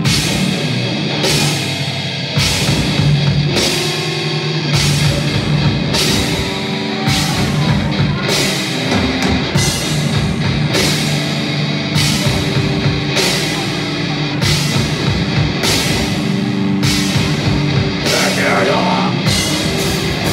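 Heavy metal band playing live: distorted electric guitars and bass over a drum kit in an instrumental passage, with strong hits about once a second.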